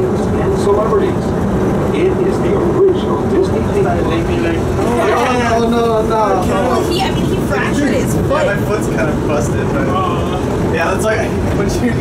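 Disneyland Monorail train running, heard from inside the cabin: a steady running noise with voices over it.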